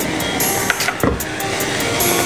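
Sauce sizzling in a small saucepan on a gas burner, with flames flaring up in the pan and a whoosh about halfway through, over background music.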